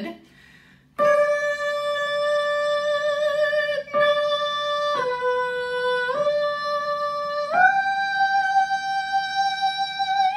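The tenor part of a barbershop tag, sounded as a single melody line of steady held notes without vibrato, starting about a second in. The line holds one note on "good", re-attacking it once, then moves on "night": it dips down and comes back up, then leaps to a high note near the end and holds it.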